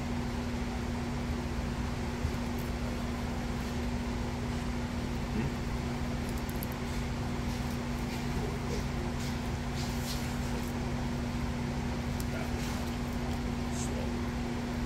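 Steady machine hum with a constant low tone, with a few faint clicks from a fillet knife working a pike fillet on a plastic cutting board.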